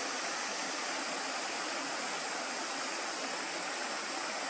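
Steady rushing of a small stream, an even, unbroken wash of water noise.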